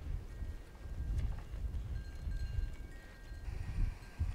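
Wind buffeting the microphone in uneven gusts, with a few faint, thin, high steady tones in the second half.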